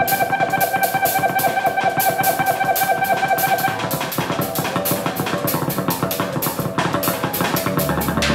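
Live improvised experimental rock trio of electric guitar, electric bass and drum kit: quick, busy drum and cymbal strokes under a held high electric tone that stops about halfway through.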